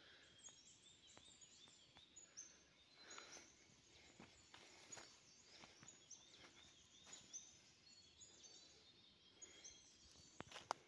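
Near silence: faint, high bird chirps repeating over and over, with a few soft, irregular clicks.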